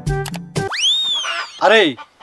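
Comic brass background music breaks off, and an edited-in cartoon whistle sound effect sweeps up and then slides down over about a second.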